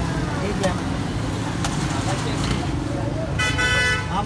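Busy street noise with traffic rumble and background voices, a few light clicks, and a vehicle horn tooting for about half a second near the end.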